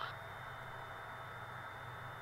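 Faint steady hiss with a low hum and a thin, steady high tone: the background of the cockpit headset intercom feed in a pause between instructions.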